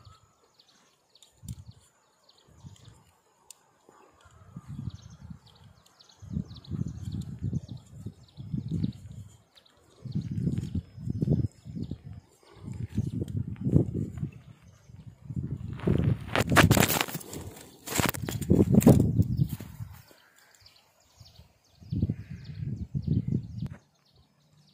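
Handling noise from steel wire being threaded through and tied onto a plastic string-trimmer head: irregular low rumbles and rustling close to the microphone, with a louder scraping rustle about two-thirds of the way through.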